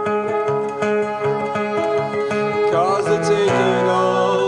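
Live acoustic guitar strumming with an electric keyboard holding sustained chords, an instrumental passage of a song. The harmony shifts about three and a half seconds in.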